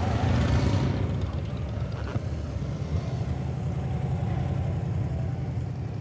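Touring and cruiser motorcycles riding past one after another at low speed, a continuous engine rumble that is loudest in the first second and eases off slightly.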